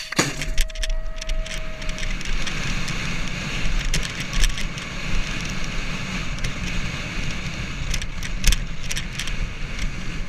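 BMX starting gate dropping with a loud clang right at the start, with a steady tone fading out about two seconds in. Then steady wind rush on a helmet camera and tyres rolling on asphalt as the bike races down the track, with scattered clicks and knocks from the bike.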